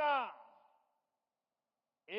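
A man's voice finishing a word into a microphone, trailing off within the first second, then complete silence.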